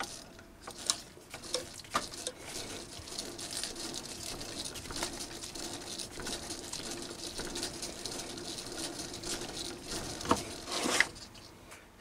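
A six-millimetre tap with its deburring chamfer tool cutting a thread in a metal bar as the lathe chuck is turned slowly by hand: a faint steady scraping rasp with scattered sharp clicks, more of them near the start and around ten seconds in.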